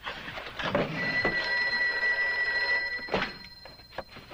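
Bell of a dial desk telephone ringing continuously for about three seconds. The ring cuts off with a knock as the handset is lifted.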